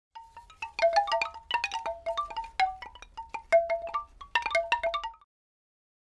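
Chimes struck in a quick, irregular cascade of ringing bell-like notes at a few pitches, cutting off suddenly about five seconds in.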